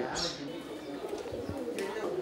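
Pigeons cooing softly in the background.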